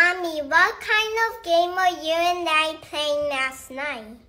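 Speech only: a high-pitched, child-like voice speaking one line of dialogue, its pitch rising and falling.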